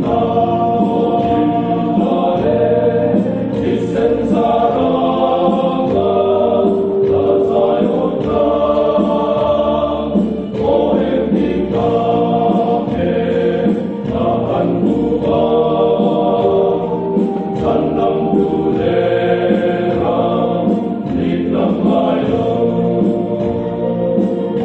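A men's group singing a hymn together in long, held notes, with a steady beat of about one stroke a second under the voices.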